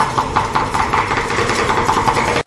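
Cleaver chopping very fast on a round wooden chopping block, the knocks so close together that they run into a continuous rattle.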